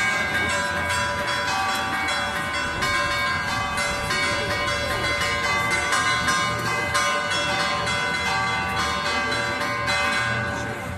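Church bells ringing a continuous peal: many overlapping strokes, each note ringing on as the next is struck.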